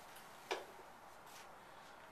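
Sheets of paper being handled and turned: one short, crisp rustle about half a second in and a fainter one near the middle, over quiet room tone.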